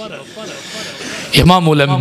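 A man's voice preaching into a microphone. After a quieter pause of about a second and a half with only faint noise, loud speech comes back in.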